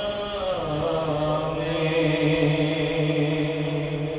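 A man's unaccompanied voice reciting a naat, an Urdu devotional song, in a chanting style. After a short gliding phrase he holds one long steady note from about half a second in.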